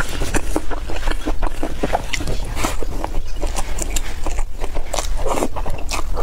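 Close-miked chewing and wet mouth sounds of a person eating braised green beans and meat, a rapid run of small clicks and smacks. Near the end a louder, fuller mouth sound as another mouthful of green beans goes in.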